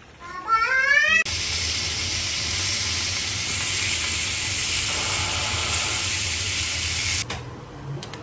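Chicken breasts sizzling on a ribbed cast iron grill griddle: a loud, steady hiss that starts about a second in and cuts off suddenly near the end.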